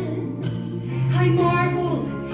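A woman singing a gospel solo over sustained accompaniment chords. Her voice pauses briefly at the start and comes back in about half a second later.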